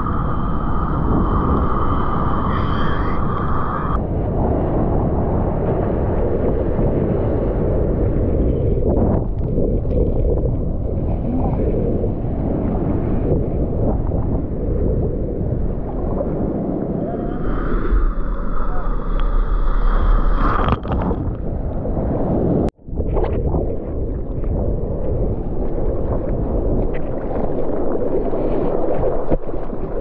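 Seawater sloshing and splashing around a waterproof action camera riding at the sea surface, with wind buffeting its microphone. A steady high whine sounds over the water twice, briefly, and the sound drops out for an instant about two-thirds of the way through.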